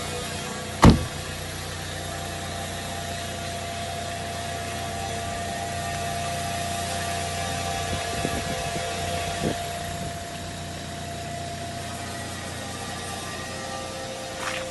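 A car's diesel engine idling steadily, with one loud thud of a car door being shut about a second in and a few light knocks later on.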